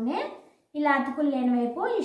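A woman speaking, with a short pause a little before the middle.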